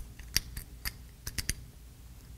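Small steel parts clicking as the slide of a Menz Liliput 4.25mm pocket pistol is pressed back onto its frame over the recoil spring: about seven sharp clicks in the first second and a half, the loudest about a third of a second in.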